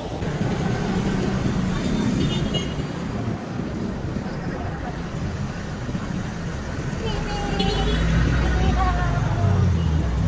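Street traffic: motor vehicles passing on a city road, with a heavier low engine rumble in the last few seconds as a vehicle comes close.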